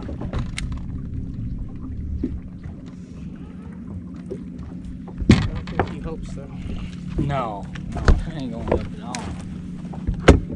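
Knocks and thuds on a bass boat deck as caught bass are handled and culled, over a steady low hum. The loudest knocks come about five seconds in and again about eight seconds in.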